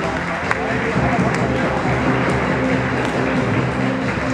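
Music playing in a large echoing sports hall, with a crowd talking underneath and a few sharp knocks.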